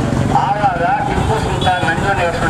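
A man making a speech into a handheld microphone, over a steady low rumble in the background.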